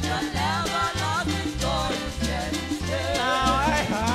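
Upbeat hymn singing with band accompaniment: voices singing the melody over a steady bass line and a regular percussion beat.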